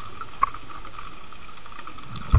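Muffled underwater ambience heard through a camera's waterproof housing: a steady hiss with one sharp click about half a second in.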